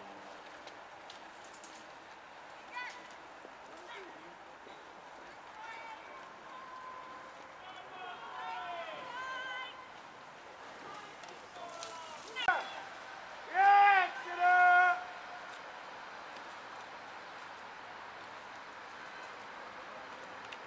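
A person's voice shouting twice, loud and drawn out, about fourteen seconds in, over faint background chatter and outdoor hubbub.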